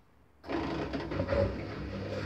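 Miele Softtronic W5820 washing machine starting up. A steady mechanical running sound with a low hum begins suddenly about half a second in.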